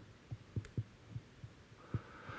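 A few faint, irregular low thuds, with one short click about two thirds of a second in.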